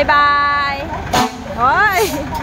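A voice saying a drawn-out "bye-bye" and then a rising-falling call, over the steady low rumble of a Hino heavy truck's diesel engine idling. A short sharp knock comes a little after a second in.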